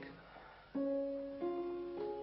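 Early Viennese fortepiano playing a slow melody with its mute (moderator) engaged, giving a veiled, soft tone. After a short pause the first held note enters under a second in, followed by two more notes.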